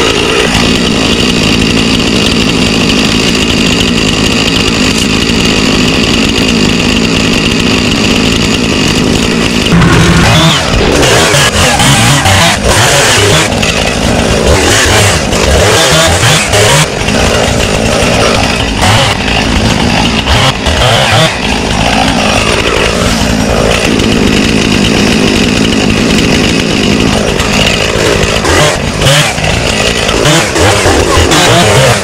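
Two-stroke chainsaw running at a steady pitch for about ten seconds, then revving up and down unevenly as it cuts through brush and small branches.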